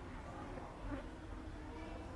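Insect buzzing steadily over a low rumble, with a brief louder sound about halfway through.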